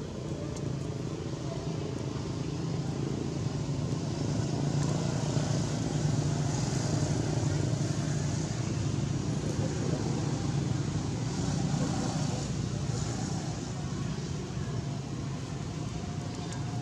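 A steady low engine hum from an unseen motor vehicle. It grows louder through the middle and eases off again, like a vehicle running or passing close by, with indistinct voices mixed in.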